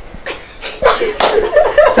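A few sharp smacks, the loudest about a second in, followed by a person's voice starting near the end.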